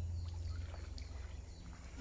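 Gentle splashing and lapping of water in a shallow swimming pool, with a few faint small splashes, over a steady low rumble.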